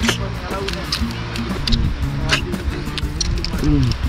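Background music with steady held notes that change every so often. Short clicks are mixed in, and a brief vocal sound comes near the end.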